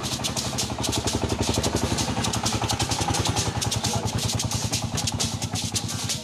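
Hand-held rattles shaken in a fast, even rhythm over a steady low hum, as an instrumental stretch of griot music.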